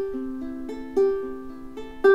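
Ukulele fingerpicked arpeggio, the pattern repeating about once a second. The fourth string is plucked with an accent, louder at the start of each pattern, and the other strings are played softer.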